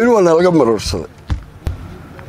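A man speaking for about a second, then a pause broken by a couple of short knocks.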